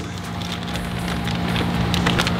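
Crinkling and rustling of a clear plastic fish bag as a hand net is worked around in the water inside it, a steady crackly noise growing slightly louder.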